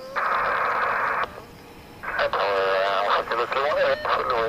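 Air traffic control radio: a burst of hissing static about a second long, then a voice coming through the radio from about two seconds in.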